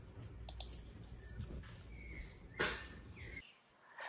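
Half a lime squeezed by hand over raw potato wedges: faint handling noise with a few small clicks, then a short louder rustle near the end before the sound cuts off.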